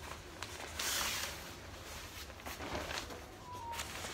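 A large cloth photography backdrop rustling and swishing as it is handled and folded, with a louder swish about a second in.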